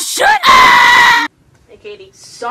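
A high-pitched voice giving a short vocal glide, then a loud held scream on one steady pitch for under a second that cuts off abruptly.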